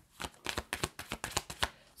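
A deck of tarot cards being shuffled by hand: a quick run of about a dozen light card clicks, roughly eight a second, stopping shortly before the end.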